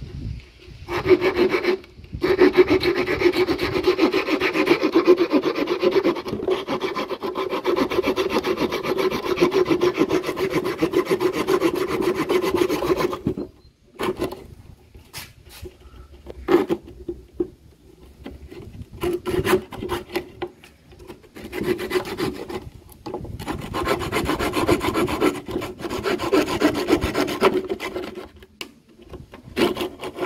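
Hand pruning saw cutting through a split bamboo strip on a wooden bench, in fast back-and-forth strokes. It saws without a break for about twelve seconds, stops briefly, then goes on in shorter bouts with gaps.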